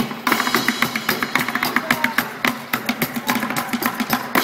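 Live street band music with the horn line stopped: a fast, even run of drum hits with acoustic guitar strumming underneath, building toward a full drum passage.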